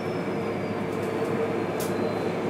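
Cabin noise inside a MAN NL323F diesel city bus: the steady running of the engine and drivetrain, with a faint high whine that slowly falls in pitch. There is a brief hiss near the end.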